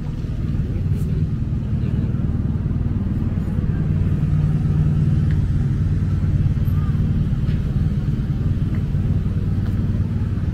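Steady low rumble of a motor vehicle engine running close by, a little louder from about two seconds in.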